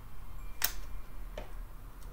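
Two small clicks from fingertips and nails pressing a paper sticker onto a planner page, the louder one about two-thirds of a second in, over a faint steady low hum.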